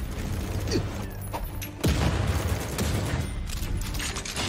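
Action-film sound effects of gunfire with mechanical clanking. A sudden louder, deeper burst starts about two seconds in and keeps going.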